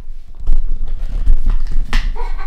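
Low rumbling thumps of a handheld camera's microphone being handled and moved, with a sharp knock near the end.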